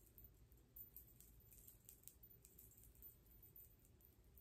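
Near silence: room tone with faint, scattered small clicks and rustles from hands turning a narrow strip of knit fabric right side out.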